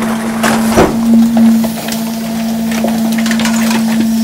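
Plastic ride-on toys cracking and snapping as a rear-loading garbage truck's packer blade crushes them in the hopper, over the truck's steady hydraulic hum. The loudest snaps come in the first second or two.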